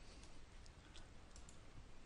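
Near silence: faint room tone with a few faint, light clicks.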